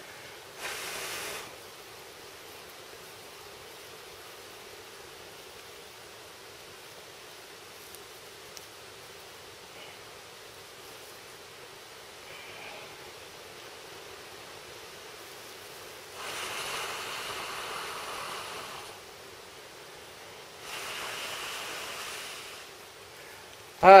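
Breath blown into a smouldering grass-and-leaf tinder bundle to coax a fire-roll coal into flame: one short blow about a second in, then two longer blows of about three seconds each near the end. The tinder is damp and the coal is dying.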